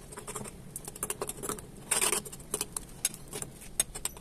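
A metal spoon clinking and scraping against a porcelain bowl while stirring a wet herb mixture, in quick irregular clicks with a louder scrape about halfway through.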